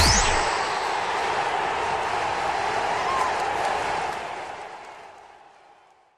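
Closing sound effect: a rising whoosh that peaks just after the start, then a steady noisy wash that fades out over the last two seconds.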